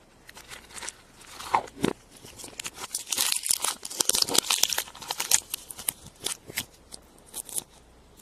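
Crinkling and tearing of the plastic wrapping on a surprise egg's yellow plastic capsule, mixed with small plastic clicks as it is handled. The crackles come thickest in the middle.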